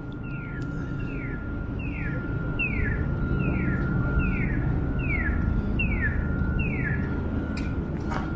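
Electronic accessible pedestrian crossing signal chirping: a short falling chirp repeats evenly about once every 0.8 s, over a steady high tone and a low rumble of street noise.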